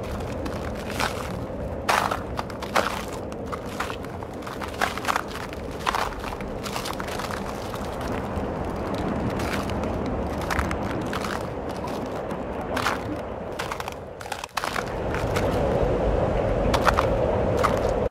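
Sharp cracks and knocks, scattered every second or so over a steady rushing noise, heard as cracking ice. The rushing grows a little louder for the last few seconds.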